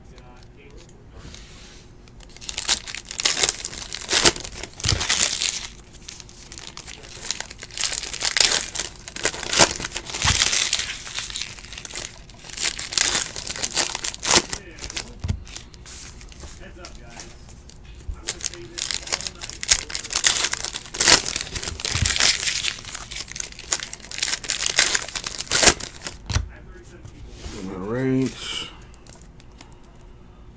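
Foil trading-card pack wrappers being torn open and crinkled by hand, in repeated rustles with short pauses between them. A brief voice sounds near the end.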